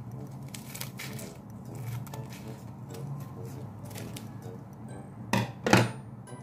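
Scissors snipping through a plastic mailer bag, with faint clicks and crinkles, over quiet background music. Near the end come two short, loud vocal exclamations.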